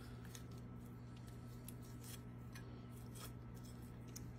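Faint, irregular clicks and scrapes of a kitchen knife cutting meat away from a rabbit's backbone, over a steady low hum.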